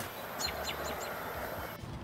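Skateboard wheels rolling on concrete just after a trick, a steady rumble and hiss that stops suddenly near the end. About half a second in come four quick, high, falling chirps.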